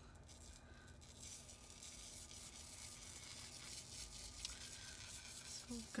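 Table salt poured from a cylindrical salt canister onto paper covered in glue lines: a faint, steady patter and hiss of falling grains.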